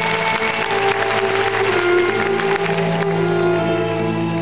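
Orchestral skating program music with sustained string lines, with crowd applause over it that is heaviest in the first two to three seconds and dies away toward the end.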